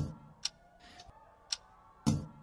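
Clock-like ticking in a soundtrack: sharp ticks about once a second over faint steady tones, with a low thud at the start and a short hiss about a second in.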